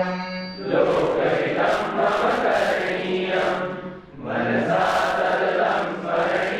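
Voices chanting a Sanskrit verse in unison. One voice holds a note, then under a second in many voices come in together. There is a short break about four seconds in before the chanting resumes.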